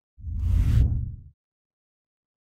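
A whoosh transition sound effect, deep and rumbling underneath with a hiss on top. It swells for about a second and then cuts off.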